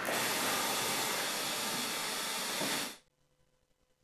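Steady white-noise hiss, the masking noise played over the courtroom sound during a bench conference so the talk at the bench can't be heard. It cuts off suddenly about three seconds in, leaving silence.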